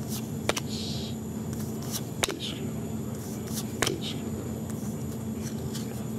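Trading cards being flipped through by hand: three light clicks and a few short scratchy slides of card against card, over a steady low hum.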